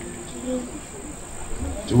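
A steady high-pitched whine or trill runs unbroken in the background, with a faint murmured voice about half a second in.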